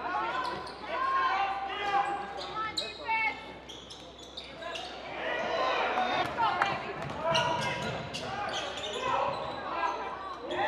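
Live basketball game sounds on a hardwood gym court: the ball bouncing and sneakers squeaking in short sharp chirps, with voices in the echoing hall.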